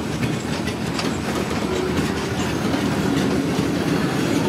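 Freight train of flatcars loaded with logs rolling steadily past: a continuous low rumble of steel wheels on rail, with irregular light clicks of the wheels over the rail joints.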